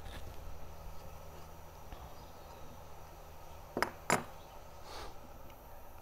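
Quiet tool handling as an oil plug is unscrewed from a Dresser Roots gas meter with a T-handle hex wrench, with two sharp clicks a little before four seconds in, over a steady low hum.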